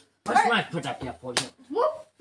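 A single sharp slap a little under one and a half seconds in, between short stretches of a person's voice.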